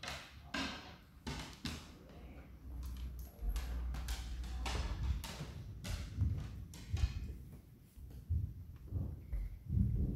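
Handling noise and footsteps from a hand-held camera being moved about: a run of clicks and knocks over a low rumble, with heavier thumps near the end.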